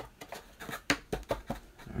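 A quick run of light clicks and taps from cardboard baseball cards being handled on a tabletop, the sharpest about a second in.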